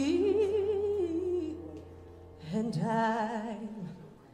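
A woman singing solo into a microphone: a long held phrase with vibrato, a brief pause about two seconds in, then a second held phrase with vibrato.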